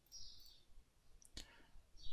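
Near silence broken by a single computer mouse button click about one and a half seconds in.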